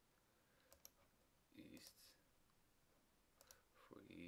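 Near silence in a small room, broken by a few faint computer mouse clicks, a pair about a second in and another pair near the end, as options are picked from drop-down menus. A brief faint mouth or breath sound comes just before the halfway point.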